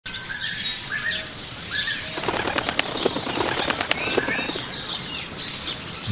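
Birds chirping in short calls, with a flock's wings flapping in two quick flurries, about two and a half and three and a half seconds in.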